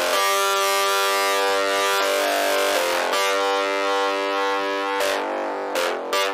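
Electronic tekno music: sustained synthesizer chords with no kick drum, changing chord every second or two, with short hissing sweeps near the end.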